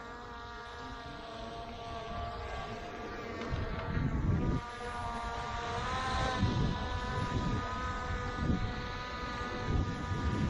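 Skydio 2 drone's propellers buzzing overhead in a steady multi-tone whine that rises a little in pitch about six seconds in. Low gusty rumbles of wind on the microphone come and go underneath.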